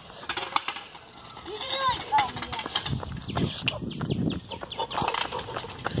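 Footsteps of running shoes on asphalt, irregular short scuffs and taps, with a voice calling out wordlessly in the background.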